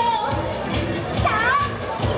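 Parade music playing, mixed with children's and spectators' voices from the crowd.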